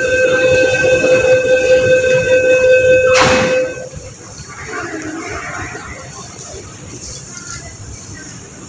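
MTR train doors and platform screen doors closing: a steady, loud warning tone of several pitches sounds for about three and a half seconds, and just after three seconds the doors shut with a single loud knock. Quieter station noise follows.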